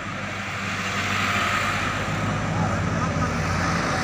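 A vehicle engine running steadily, its hum growing louder about a second in.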